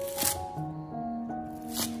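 A cleaver chopping through a bundle of scallions onto a wooden cutting board, twice: once just after the start and once near the end. Background music plays throughout.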